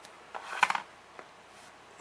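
Small cardboard tube boxes being handled: a brief rustle with a few light taps about half a second in, then only faint room tone.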